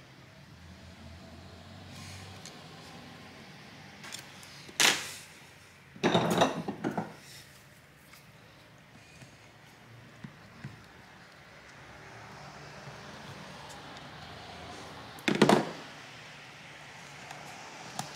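Handling noise from tools and parts on a laptop display assembly: a few sharp clicks and knocks about five seconds in, a short cluster a second later, two faint ticks near the middle and one more knock near the end, over low room noise.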